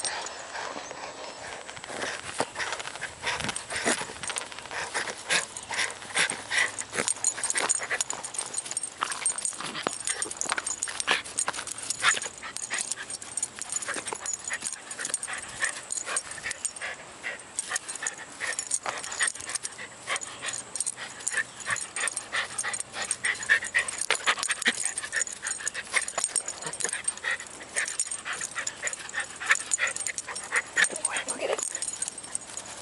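A small dog playing tug-of-war with a plush toy, making quick, busy play sounds with its breath and mouth amid jostling and rustling, dense and continuous throughout.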